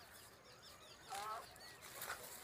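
Quiet rural background with faint high bird chirps, then one short honking call a little over a second in.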